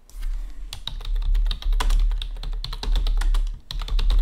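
Rapid typing on a computer keyboard: a quick, uneven run of key clicks with a brief pause near the end.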